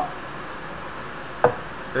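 Steady background hiss with one short, sharp click about one and a half seconds in.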